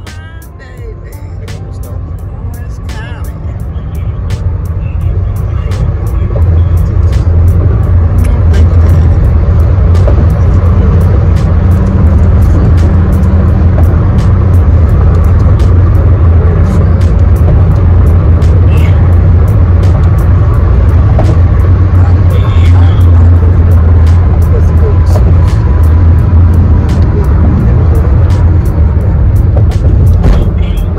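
Loud, steady low rumble of road noise inside a car cruising on a highway, building over the first few seconds, with music playing and scattered sharp clicks.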